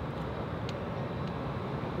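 Steady outdoor background noise, a low even rumble with a faint tick or two.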